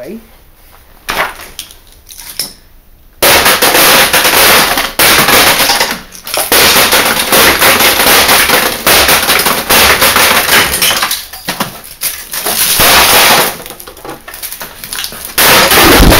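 Hammer beating rapidly and almost without pause on the metal backplate and frame of a gutted LCD monitor panel, with glass shards crunching and shattering under the blows. There is a single knock about a second in, and the hammering starts about three seconds in and goes on loudly with a few brief pauses.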